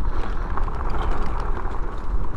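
Fat-tyre electric bike riding over a bumpy dirt trail: a steady rumble of the 4-inch tyres on the dirt, mixed with wind noise on the microphone.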